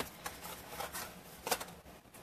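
Faint handling noise of a roll of glue dots being moved and set down on a paper-covered desk, with light rustling and a small tap about one and a half seconds in.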